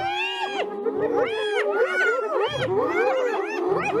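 A group of spotted hyenas calling together: many short overlapping whoops that rise and fall in pitch, over one steadier held call.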